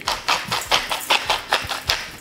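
Hand-twisted salt mill grinding salt crystals: a rapid, rhythmic series of crunching clicks, several a second, as the mill is turned back and forth.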